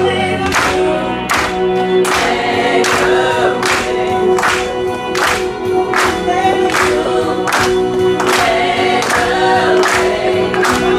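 Small female vocal group singing a gospel song in harmony, with a sustained low note under the melody. A regular beat of sharp sounds, about twice a second, runs beneath the voices.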